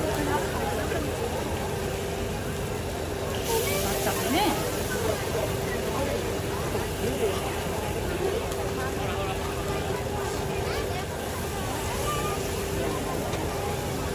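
Indistinct crowd chatter over a steady hiss from the gas-fired takoyaki griddles, where batter is cooking, with a steady hum running underneath.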